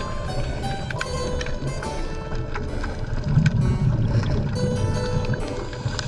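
Underwater sound picked up by a diver's camera: a steady low rumble that swells for about a second around the middle, typical of a scuba regulator's exhaled bubbles. Scattered sharp clicks and short thin tones run through it.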